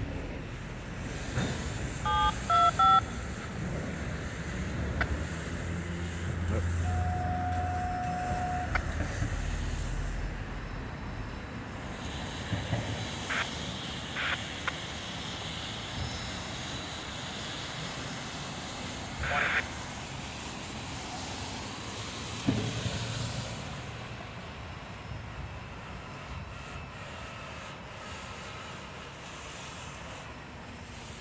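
Freight train of autorack cars rolling past on the rails, a steady rumble that fades as the train moves away. A radio scanner gives a quick run of short beeps about two seconds in, then a steady tone of nearly two seconds around seven seconds in.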